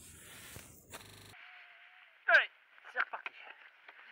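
A person's short falling call about two seconds in, the loudest sound, followed by a few fainter vocal sounds, over a faint steady hiss. The sound changes abruptly just after one second.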